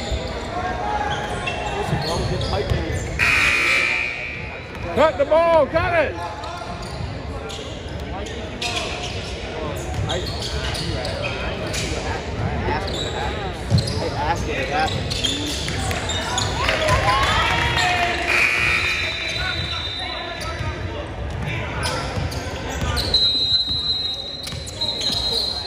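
A basketball bouncing on a hardwood gym floor during play, with sneakers squeaking sharply about five seconds in and again later. Players' voices echo in the large gym.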